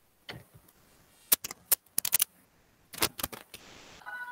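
Computer keyboard keystrokes clicking in short, irregular bursts, with quiet gaps between them.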